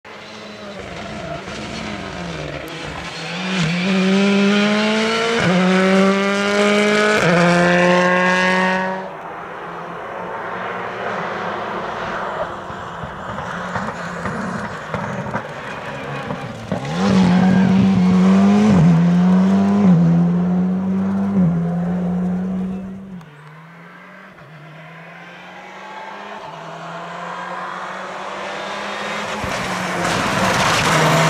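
Rally cars on a special stage, passing one after another at full throttle. Each engine climbs in pitch and drops back at every upshift: one car pulls hard through several gears between about 4 and 9 seconds, an Alpine A110 rally car does the same between about 17 and 23 seconds, and another rally car is heard approaching, louder and louder, near the end.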